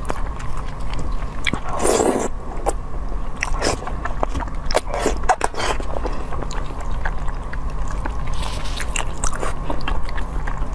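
A person chewing food close to a clip-on microphone: a run of wet mouth clicks and smacks, with a louder noisy smear about two seconds in. A steady low hum runs underneath.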